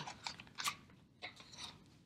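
Faint crinkling of a plastic food package being handled, a few short soft rustles over the first second and a half.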